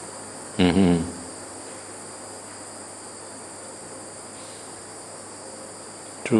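Insects chirring steadily at a high pitch, with one short vocal sound from a man's voice a little over half a second in.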